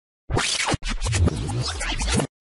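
Glitchy scratching sound effect used as a video transition: two harsh bursts of noise, each cutting off abruptly into dead silence.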